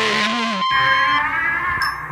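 Rock band music with electric guitar that cuts off abruptly less than a second in, leaving a chord ringing and fading; a high bell-like struck note sounds near the end.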